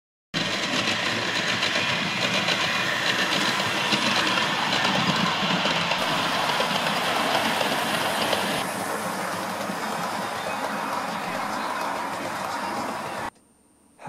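OO gauge model train running along the layout's track, a steady rattle of wheels over the rails that grows a little quieter partway through and cuts off suddenly about a second before the end.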